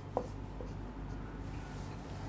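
Marker pen writing on a whiteboard: faint strokes rubbing across the board.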